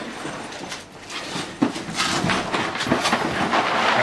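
Duffel bags being unzipped and rummaged through: zipper rattle and fabric rustling, with cardboard boxes clattering as they are pulled out, getting busier from a sharp click about one and a half seconds in.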